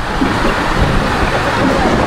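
Steady rush of wind buffeting the microphone, with the wash of water on a lake.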